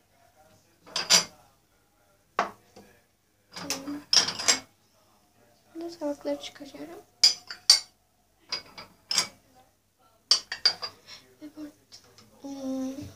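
China crockery clinking as it is handled: a porcelain saucer and other dishes knock together in a string of sharp clinks at irregular intervals.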